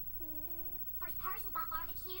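High-pitched vocal sounds: a few short, wavering calls with a high pitch, starting just after the beginning and louder in the second half.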